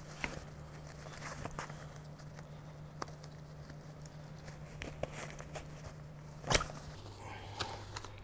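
Faint rustling and small clicks of hands working a twisted strap on a Bumprider Connect V2 stroller's seat, with one sharper click about six and a half seconds in, over a low steady hum.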